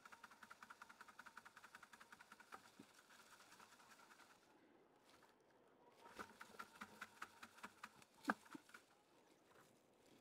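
Very faint crackling and rustling of dry lettuce seed heads being rubbed and shaken by hand in a plastic bucket, in two short spells with a brief pause between and one sharper click near the end; otherwise near silence.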